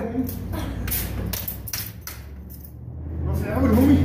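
Short metallic clicks and clinks of a tool being worked in the lock of a steel security screen door that is stuck shut, with a voice near the end.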